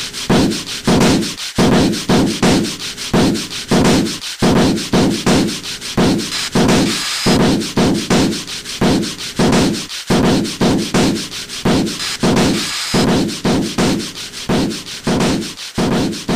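Rhythmic rubbing or sanding strokes on wood, even and steady at about two to three strokes a second, like a beat.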